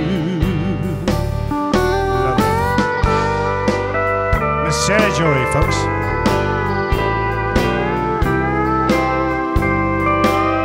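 Live country band playing an instrumental break, led by a pedal steel guitar with sliding, bending notes over a steady drum beat and bass. A held, wavering sung note ends about half a second in.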